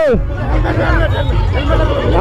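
Crowd babble of a packed street, with several people talking and calling out close by over a steady low rumble.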